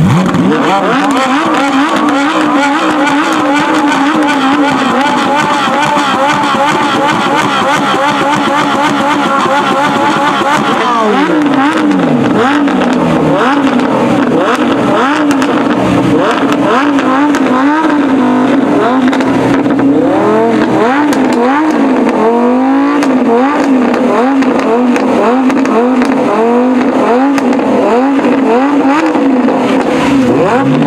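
Lamborghini Huracán V10 and Ferrari 458 Italia V8 being revved hard while stationary. The engine note is held high with a quick wobble for about ten seconds, then falls away and gives way to a long string of sharp throttle blips, the pitch jumping up and dropping back again and again.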